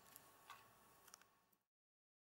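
Near silence: faint room hiss with a few small, soft clicks, then the audio drops to complete silence about one and a half seconds in.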